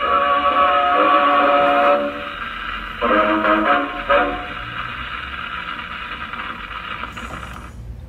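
Acoustic gramophone playing an orchestral 78 rpm record, its sound thin and boxy, with no deep bass and no treble. The music is loud through a few chords, grows quieter after about four seconds, and breaks off near the end.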